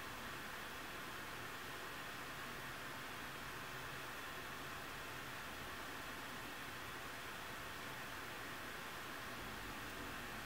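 Steady, faint hiss of room tone and recording noise, with no distinct sounds.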